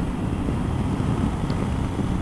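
Motorcycle engine running at steady road speed, a low rumble under wind noise on the rider's microphone.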